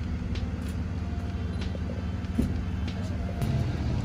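Steady low hum of a running engine, with a few faint clicks.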